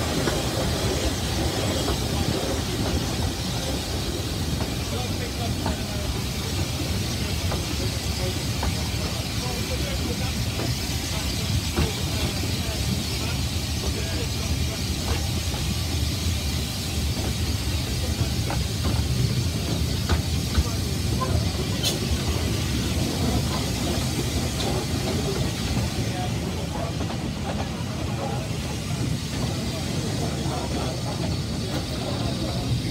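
Narrow-gauge railway carriage running along the line: a steady rumble and rattle of the coach and its wheels on the rails, with small clicks and knocks throughout.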